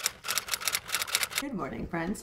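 A rapid run of sharp clicks, about eight a second, for about a second and a half, then a woman begins speaking.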